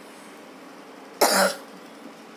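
A single short cough about a second in.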